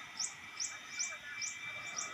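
A small bird chirping over and over, a short high chirp about three times a second at a steady pace.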